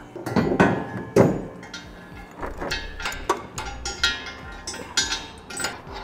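A steel trailer hitch and its bolts and washers clanking and clinking against the truck frame as the hitch is set into position and the rear hardware is fitted. The sound is a string of irregular metal knocks with a ringing after them, the loudest about half a second and a second in.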